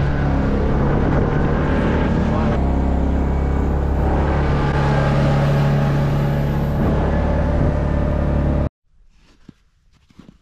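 Side-by-side UTV's engine running steadily under way, over a steady rushing noise; its pitch steps once about two and a half seconds in. The sound cuts off suddenly about a second before the end, leaving only faint quiet sounds.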